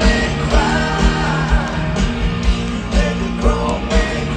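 Live rock band playing at full volume through a stadium PA, with a steady drum beat about twice a second, guitar and a male lead singer, heard from within the crowd.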